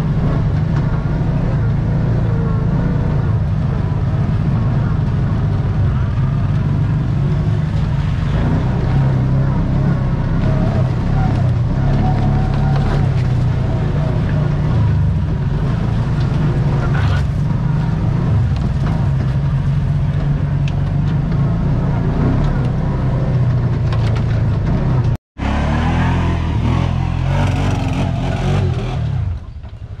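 Kawasaki Teryx side-by-side's V-twin engine running steadily under load as it crawls a rocky trail, picked up close by a hood-mounted camera. The sound cuts out for an instant about 25 seconds in and drops in level just before the end.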